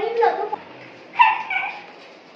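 A goat bleating twice: a short call right at the start and a higher-pitched one a little past halfway.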